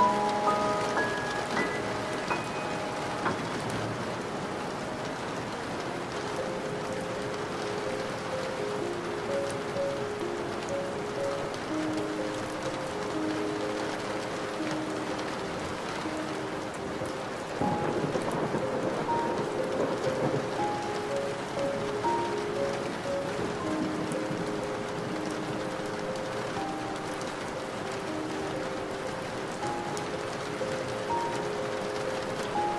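Steady rain falling, with soft music of slow single notes playing underneath. A roll of thunder comes in a little past halfway and adds a low rumble to the rain.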